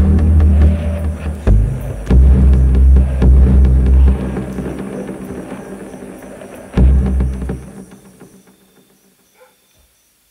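Electronic music built on heavy, deep bass notes with scattered clicks, thinning out after about four seconds. A last deep bass hit comes near the seventh second, then the music fades away to near silence.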